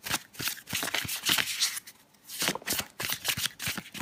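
A tarot deck being shuffled by hand: rapid runs of card flicks and slaps. There are two runs, with a brief pause a little past halfway.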